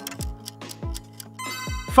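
Quiz countdown timer ticking about four times a second over electronic background music, with sustained tones and deep falling bass hits that build louder toward the end.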